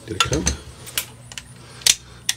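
A few sharp little metal clicks as a folding pocket knife is handled and opened, the loudest click near the end.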